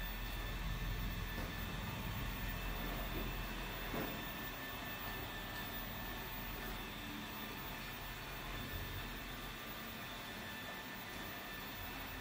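Eufy robot vacuum running across a tile floor under remote control: a steady mechanical whir with a low rumble, turning slightly fainter after about four seconds.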